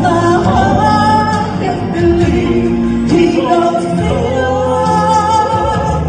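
A woman and a man singing a praise-and-worship song as a duet into microphones, with sustained notes over a steady instrumental accompaniment.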